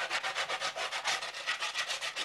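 Hand sanding: sandpaper rubbed back and forth in quick, even strokes, about nine a second.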